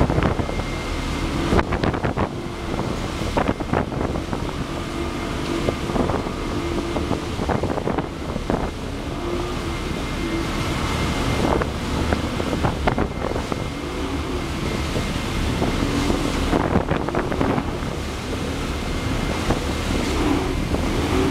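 Motorboats running at speed side by side: a steady engine drone that wavers in pitch, the rush of churned water and spray, and wind buffeting the microphone. Sharp slaps of water break in every few seconds.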